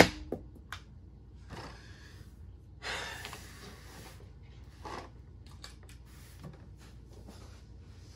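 A sharp knock right at the start, then a person's long breathy exhale about three seconds in, with a few faint clicks and rustles of movement on a table.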